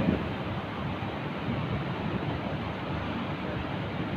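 Steady, even background hiss in a pause in the speech, with no distinct event.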